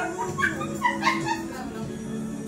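Women laughing with short high-pitched squeals in the first part, over an acoustic guitar chord left ringing that fades out.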